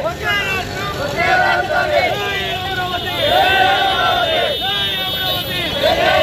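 A crowd of protesters shouting slogans together, the same short phrases repeated over and over in loud, overlapping voices.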